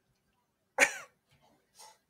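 A woman's single short, sharp exclamation ("I!") a little under a second in, falling in pitch, then a faint short vocal sound near the end; otherwise near silence.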